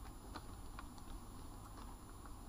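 Faint, irregular soft clicks over a low hum, several in two seconds.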